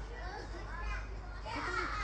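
Children's voices chattering and calling out at a distance, with a louder burst of several voices near the end, over a steady low rumble.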